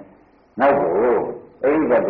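Speech: a man's voice giving a Burmese Buddhist sermon, falling silent for about half a second at the start and then carrying on speaking.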